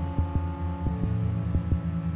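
Modular synthesizer ambient music: low held bass tones under a steady picking pattern of short plucked notes, about five or six a second.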